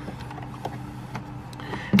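Narwhal Freo robot mop base station running with a steady low hum as it dries its mop pads, with a few light clicks as its lid is lifted open.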